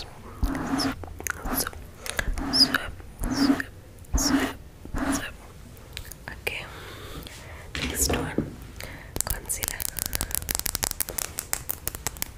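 Close-miked whispering and mouth sounds in short bursts, repeating roughly once a second. About nine seconds in comes a fast run of tapping and clicking on a plastic makeup product held at the microphone.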